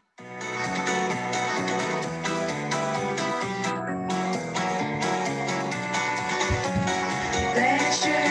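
Recorded song with sung Ukrainian verse, played from a video: the music starts abruptly just after a moment of silence and runs steadily, with a louder part coming in near the end.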